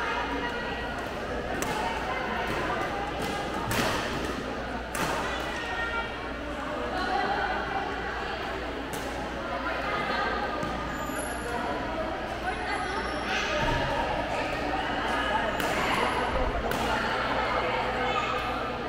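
Badminton rackets striking a shuttlecock in a rally: sharp, irregular hits a second to several seconds apart, over steady background chatter of people in the hall.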